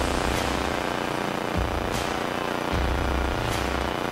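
Steady hiss and drone in the cockpit of a single-engine Beechcraft Bonanza in cruise: the piston engine and propeller noise mixed with open HF radio static, with a couple of faint clicks.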